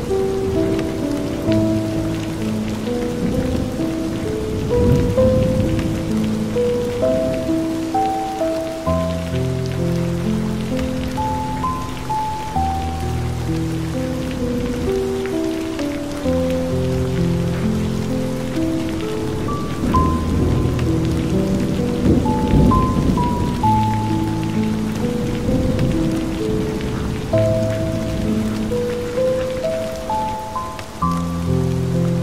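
Slow relaxation music tuned to 432 Hz, long held notes in a gentle melody over deep sustained bass notes, mixed with the steady sound of rain falling on a hard surface.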